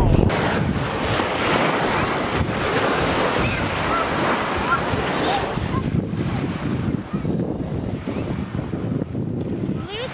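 Steady noise of wind buffeting the microphone and waves washing on the shore, easing a little after about six seconds.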